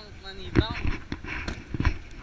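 Several footsteps on gravel, irregular knocks a few tenths of a second apart, with short bits of a man's voice.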